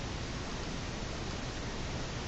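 Steady, even hiss of the recording's background noise, with no other sound.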